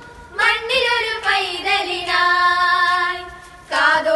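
A group of girls singing a Christmas carol together, with a short break just after the start and a pause between phrases near the end.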